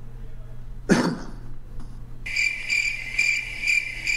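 A single cough about a second in, then crickets chirping from about two seconds in: a steady high-pitched chirp pulsing about twice a second, the stock sound effect laid in for an awkward silence.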